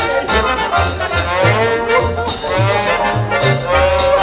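Lively swing-style band music led by brass, with sliding horn lines over a bouncing bass line at a steady dance tempo.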